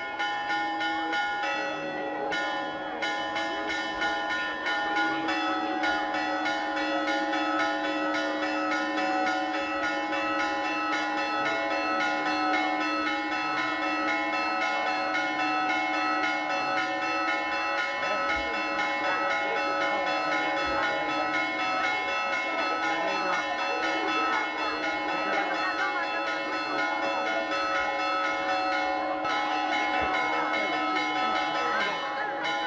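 Church bells pealing continuously, with rapid, evenly repeated strokes whose tones ring on and overlap.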